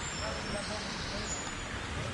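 Faint, indistinct chatter of a group of hikers over a steady rushing background noise.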